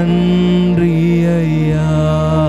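Slow worship music on a Yamaha PSR-S975 keyboard: sustained chords under a male voice holding a long, low note. The deep bass drops out near the end.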